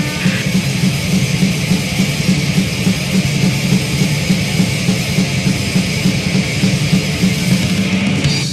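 Thrash metal from a 1980s demo recording: a band plays an instrumental stretch of fast, steady riffing on distorted electric guitar over driving drums, with no vocals.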